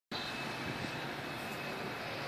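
Steady outdoor city ambience: an even background noise with no distinct events, a faint high tone running through it.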